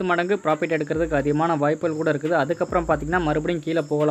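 A voice talking without pause, with a faint steady high-pitched whine underneath.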